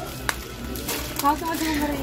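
Faint speech over steady shop background noise, with a single short click about a third of a second in.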